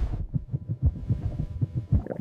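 Heartbeat sound effect: a run of low, pulsing thumps, standing for a heart forced to pump harder.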